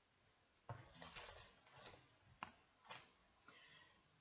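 Faint rustling and a few soft clicks from a crochet hook and yarn being handled while a stitch is worked.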